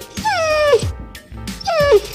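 A dog whining twice, each a short cry that falls in pitch, over background music.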